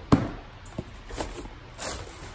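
Packaging being handled as a boxed graphics card is lifted from a cardboard shipping box packed with plastic air pillows: a sharp knock just after the start, a few light taps, and a rustle near the end.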